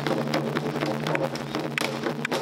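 Taiko ensemble: several barrel-shaped Japanese taiko drums struck together with wooden bachi sticks, in a fast run of strokes.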